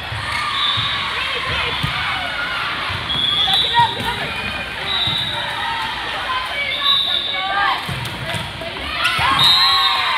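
Girls' volleyball rally on a gym court: the ball being bumped, set and hit, with a louder hit about four seconds in. Sneakers squeak briefly on the court, and players and spectators call out and shout throughout.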